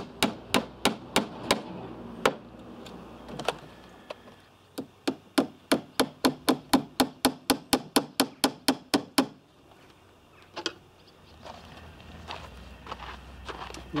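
Hammer nailing tongue-and-groove timber boards onto a wooden cabinet frame: quick runs of sharp strikes, about four a second, broken by short pauses. The blows stop a little after nine seconds in, with a couple of last ones soon after.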